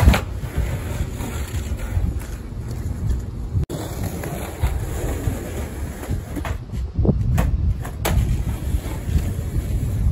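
Skateboard wheels rolling on rough asphalt with several sharp clacks of the board, over a low rumble of wind buffeting the microphone.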